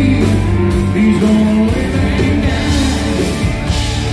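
A live country-rock band playing loudly: electric guitars, bass and a drum kit with cymbals.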